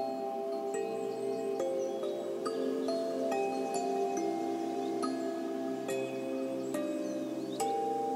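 Soft meditation background music: sustained held notes that shift to new pitches every second or so, with scattered light wind-chime strikes tinkling over them.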